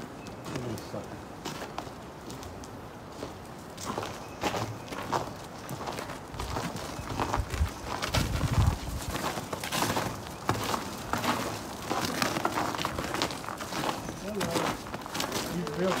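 Footsteps on a snow-covered bridge deck, a steady series of short steps that starts a few seconds in, with a brief low rumble about halfway through.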